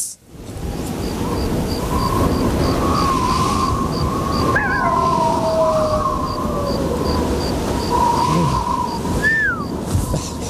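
Stock 'dead silence' sound effect after a joke falls flat: crickets chirping steadily, about three chirps a second, over low wind with a long wavering howl that glides down near the end.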